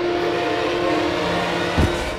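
Dramatic TV background score: a steady, horn-like held drone note with a short low thump near the end.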